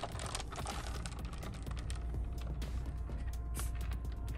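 Plastic soda bottle being handled on a wicker table: a scattered string of small clicks and creaks over a steady low rumble.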